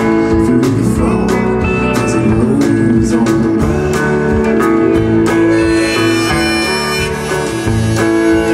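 Harmonica in a neck rack playing long held notes over a live band of electric guitars and drums.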